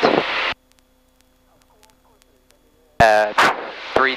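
Aircraft headset intercom audio: a voice cuts off abruptly about half a second in, leaving near silence with a faint steady hum, as the intercom squelch closes. About three seconds in, a sharp click opens a radio transmission and a voice speaks over the radio.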